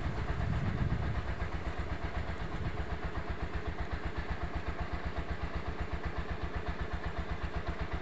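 Motorcycle engine idling steadily, an even, rapid low throb.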